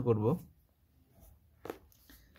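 A man's voice finishes a spoken word in Bengali in a small room, then room tone with a single short click near the end.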